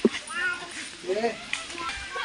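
A cat meowing: two short calls that rise and fall in pitch, about half a second in and again just over a second in.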